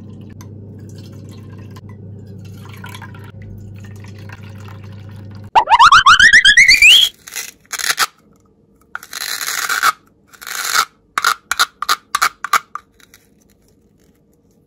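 Water trickling into a metal muffin tin over a faint steady hum. About five seconds in, a loud rising whistle-like sound effect. Then a run of plastic clicks and rustling as a hollow plastic toy shell is handled and pulled apart.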